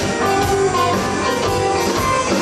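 Live band playing electric guitars, bass and drum kit, with a steady beat.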